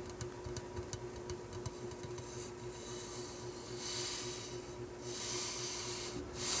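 Faint, soft handling noise: a few small clicks in the first couple of seconds, then several brief soft rustles or hisses, over a steady low hum.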